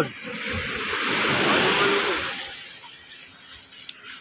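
A wave washing up the beach: a swelling hiss that builds for about a second and a half and then fades away.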